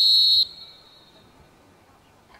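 A referee's whistle: one short, loud, high-pitched blast of about half a second, trailing off over the next second.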